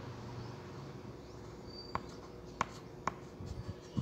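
Three sharp clicks about half a second apart in the second half, over a faint steady hum and low room noise.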